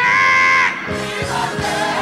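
Live gospel singing: a solo voice holds one high note for under a second, then a choir comes in, with low sustained accompaniment underneath.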